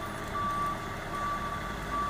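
A vehicle's reversing alarm beeping on one steady high pitch, the beeps repeating at an even rate.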